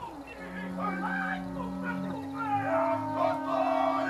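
Long, drawn-out ceremonial calling from Māori performers: a steady held note begins just in, with wavering voices over it that grow louder after about two and a half seconds.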